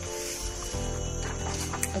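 Electronic keyboard playing soft sustained chords, moving to a new chord about three-quarters of a second in.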